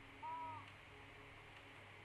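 A short, soft hummed vocal sound, like a thinking "hmm", about a quarter second in, then only faint room noise.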